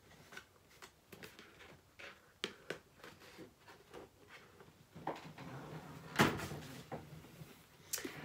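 A cardboard presentation box being opened and handled: scattered light taps and rustles, with a louder knock about six seconds in.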